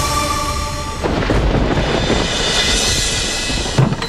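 Dramatic background score: held musical notes, then about a second in a deep rumbling swell with a rising hiss that builds and breaks off in a hit near the end.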